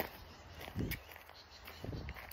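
Footsteps on a leaf-covered dirt trail, soft thuds about one step a second, over a faint outdoor background.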